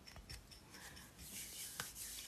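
Faint rubbing and scraping of a hand handling the phone close to its microphone, growing stronger in the second half and ending in a sharp click.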